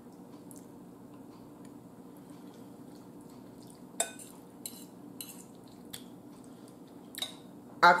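A metal fork clinking and scraping against a bowl while eating: a few light, sharp clicks over a steady low hum. The loudest is a ringing clink about halfway through.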